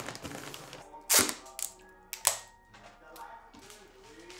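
Gift-wrapping paper being folded and pressed around a box, crinkling, with a loud crackle just after a second in and another sharp one a little after two seconds, over soft background music.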